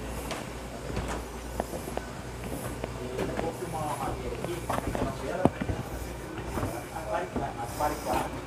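Indistinct background conversation between two people, with a few sharp knocks of footsteps on wooden deck planks and a steady low hum.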